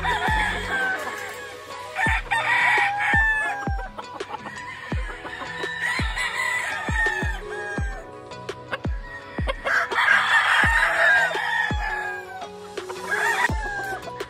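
Gamefowl roosters crowing, one long crow after another, some overlapping, over background music with a steady kick-drum beat.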